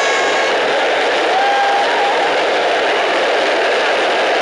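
Steel ball-bearing wheels of a carrinho de rolimã rolling fast on asphalt: a loud, steady rolling noise with no engine.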